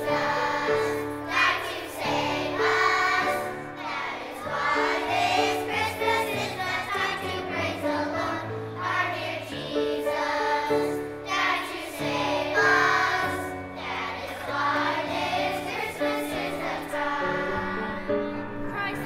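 Children's choir singing a song in unison over an instrumental backing of held chords.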